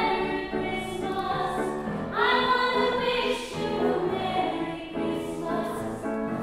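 A woman singing with grand piano accompaniment, holding long notes.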